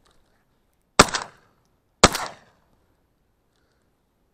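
Two shotgun shots from an Armsan 612S, about a second apart, each a sharp report with a short echoing tail. They are fired at a flushing mallard at the limit of range.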